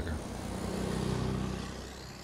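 Tractor-trailer truck driving past close by: engine hum and road noise swell to a peak about a second in, then fade away.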